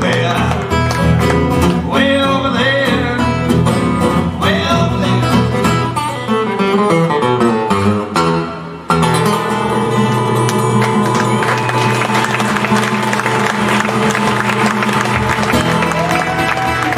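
Acoustic guitar and resonator guitar playing a blues instrumental break together. It has a descending run of notes, a brief dip about eight and a half seconds in, then steadier strummed chords.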